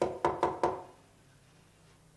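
Four quick knocks on a wooden door, all within the first second, each with a short ring.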